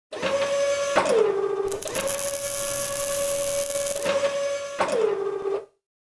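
Animated robot-arm servo sound effects: a steady motor whine that drops in pitch twice, about a second in and again near five seconds, with a hissing whir in the middle. It cuts off abruptly just before the end.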